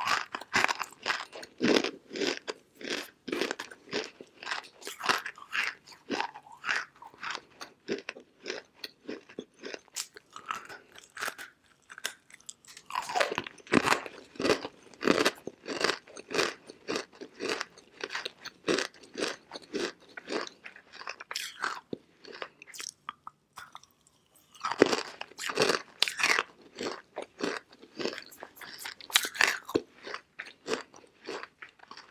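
Chunks of dry edible clay being bitten and chewed, a fast run of crisp crunches. There is a short lull about three-quarters of the way through, then fresh bites start a louder run of crunching.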